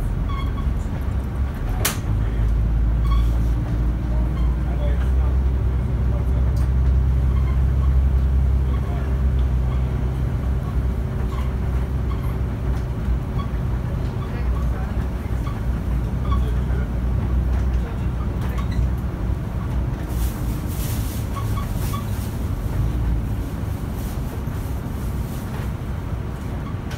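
Inside a Volvo city bus under way: a steady low rumble of the bus's drivetrain and tyres, heaviest in the first half. A short hiss of air comes about twenty seconds in.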